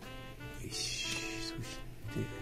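Background music of held notes that change pitch. A brief high hiss comes in about a second in.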